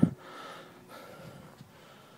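A person's faint breathing close to the microphone, just after a word ends.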